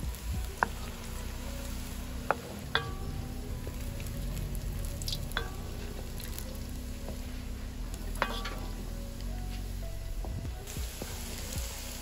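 Breaded cutlet balls deep-frying in oil in a metal wok, a steady sizzle. A wooden spoon stirs them and knocks against the pan several times, some knocks ringing briefly.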